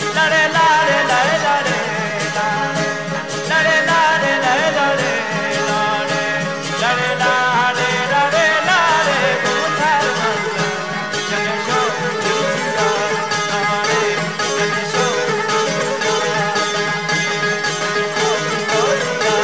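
Balochi folk song: a man sings in long, ornamented, wavering lines over a steady drone from a strummed long-necked dambura lute, with a bowed suroz fiddle.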